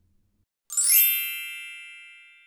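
Logo sting chime: a sudden bright ding about two-thirds of a second in, with a quick rising sweep at its start, ringing on in several tones and slowly fading.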